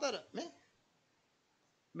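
A man's speech trailing off with one short syllable about half a second in, followed by near silence for over a second.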